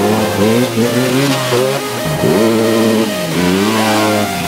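Enduro dirt bike engine revving hard as the bike accelerates toward the camera. The pitch climbs, drops sharply at a gear change about two seconds in, climbs again and dips once more near the end.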